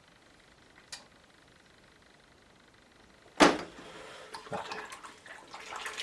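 Near-silent room tone with a faint click about a second in. Then a sharp knock about three and a half seconds in, followed by light clatter and watery swishing as the paintbrush is put down and rinsed in its water pot.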